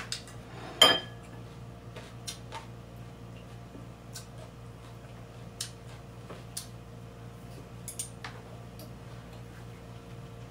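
Wooden chopsticks clinking against a ceramic plate and bowl: a few scattered sharp taps, the loudest about a second in, over a steady low hum.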